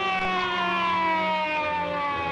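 Police car siren winding down, one long wail that falls slowly in pitch.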